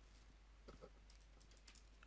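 Near silence with a few faint clicks of calculator keys being pressed as a calculation is entered.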